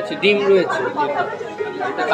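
People talking: one voice clearly heard about a quarter second in, then quieter overlapping chatter of several voices.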